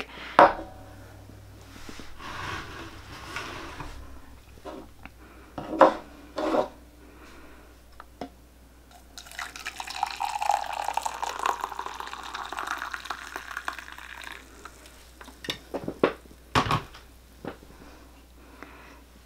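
Water poured from a glass kettle into a glass mug: a steady splashing pour that starts about nine seconds in and lasts about five seconds. A couple of sharp knocks come about six seconds in, and a few fainter ones near the end.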